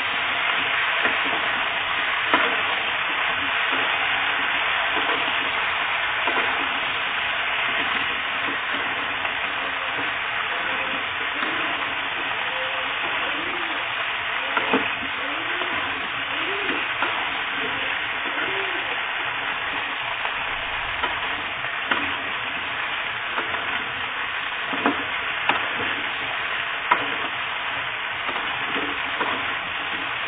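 Potato and eggplant chunks frying in oil in a wok: a steady sizzle as they are stirred with a spatula, with occasional sharp clicks of the spatula against the pan.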